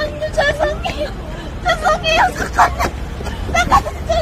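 A high-pitched voice calling out in several short phrases over a steady low rumble of a car or street traffic.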